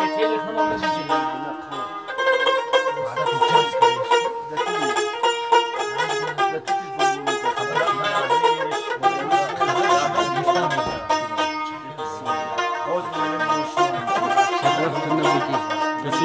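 Long-necked plucked lute playing a lively instrumental passage, quick runs of plucked notes over a steady held note underneath.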